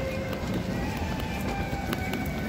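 Footsteps of someone walking along a paved pedestrian street, with the voices of passers-by in a busy outdoor street crowd.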